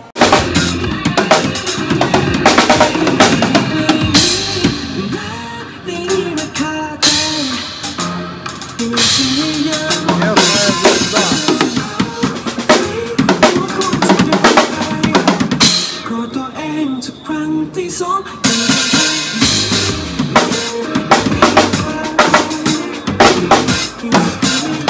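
A Tama drum kit played live at a fast pace, with the bass drum, snare, rimshots and cymbals hit in a dense, steady pattern. The drumming runs along with backing music that carries a melody, played through an amplifier.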